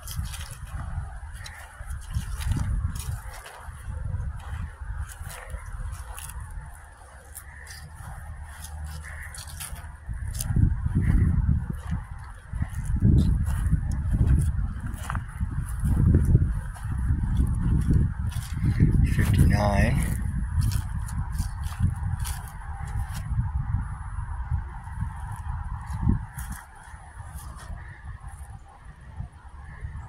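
Wind buffeting the microphone in gusts, over light crackling steps on dry grass, with one short honking call about two-thirds of the way through.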